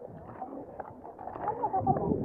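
Faint chatter of people walking nearby, with footsteps on a stone path.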